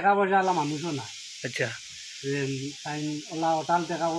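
A man talking, with a steady high-pitched hiss that comes in suddenly about half a second in and carries on beneath his voice.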